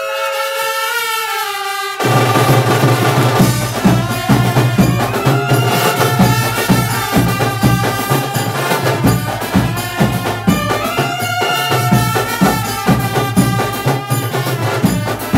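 Brass band of saxophones, clarinets and trumpets playing a melody together; drums come in about two seconds in and keep a fast, driving beat under the horns.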